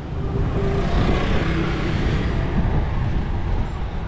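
Street traffic: a car engine running with tyre noise as it approaches, growing louder in the first second and then steady.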